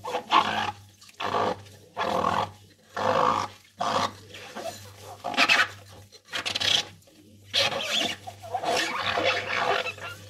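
Rubber-gloved hands scrubbing a soapy cut-crystal bowl: a run of rubbing strokes, roughly one a second, with squeaks of rubber on wet glass and the squelch of foam.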